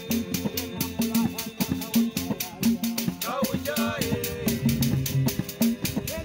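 Live Tonga band music: strummed acoustic and home-made wooden guitars over low repeated bass notes, driven by a steady rattle rhythm. A voice sings a short phrase about halfway through.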